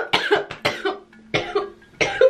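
A woman coughing: a short fit of several coughs in quick succession.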